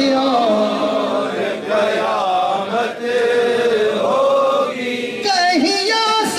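A male naat reciter singing long, wavering melismatic phrases of devotional Urdu verse. A steady held note runs beneath the voice.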